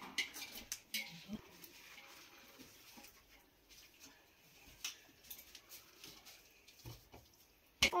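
Quiet room with scattered light clicks and knocks of steel dishes and a bowl being handled, with one sharper knock just before the end.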